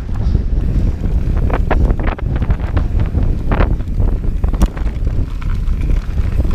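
Heavy wind buffeting on an action camera's microphone as a mountain bike rides fast downhill, with a few sharp knocks and rattles from the bike over bumps in the trail.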